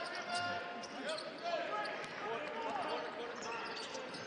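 Live basketball game sound: a basketball dribbled on a hardwood court, short squeaks, and the murmur of the arena crowd.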